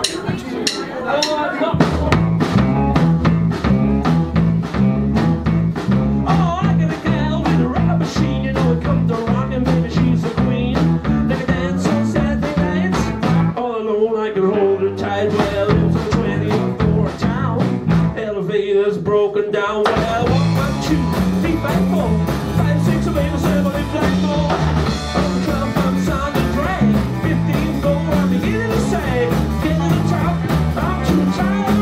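Live blues-rock band playing: electric bass, drum kit and electric guitar. Bass and drums come in about two seconds in and drive a steady beat, with two short breaks in the middle where the low end drops out under a held guitar note.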